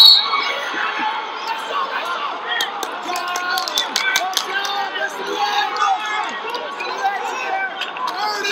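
Several voices shouting over one another, typical of coaches and teammates yelling instructions at a wrestling match, with a run of sharp clicks between about two and a half and four and a half seconds in.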